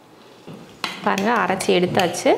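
A steel spoon clinks and scrapes inside a stainless steel mixer-grinder jar of ground chicken paste, with a couple of sharp metal clicks. A woman speaks briefly over it in the second half.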